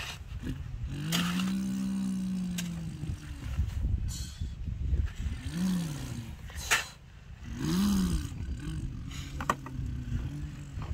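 A person imitating a truck engine with their voice: a long rising-and-falling 'vroom' held for nearly two seconds about a second in, then shorter revving calls around six and eight seconds in. Sharp clicks of the plastic toy dump truck being handled come between them, the loudest as its bed is tipped.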